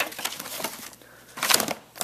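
Paper, cardboard and plastic packaging rustling and crinkling as items in a storage bin are shuffled by hand, with a louder burst of crinkling about a second and a half in.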